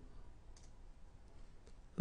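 Quiet room tone with two faint clicks of a computer mouse, one about half a second in and one near the end, as the slide presentation is advanced.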